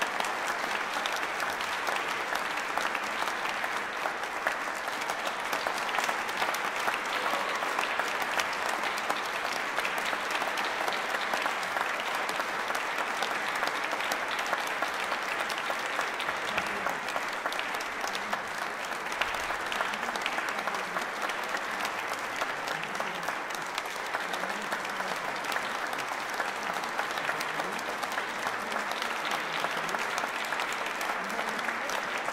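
Audience applause: a dense, steady clapping that continues without a break.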